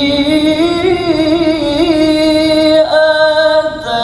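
Male qari reciting the Quran in the melodic tilawah style, holding a long, ornamented note whose pitch rises and wavers, with a short break about three quarters of the way through before the phrase goes on.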